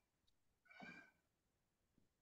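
Near silence, broken once just under a second in by a faint, brief pitched sound.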